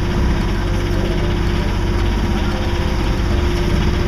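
A sailboat's auxiliary engine running steadily at low speed: a constant low drone with a steady hum over it.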